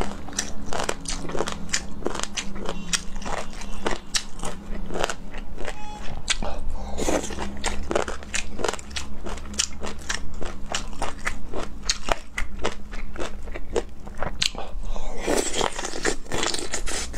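Close-miked chewing of lemon chicken feet: wet, crunchy bites of skin and cartilage, about two to three crunches a second, with a steady low hum beneath.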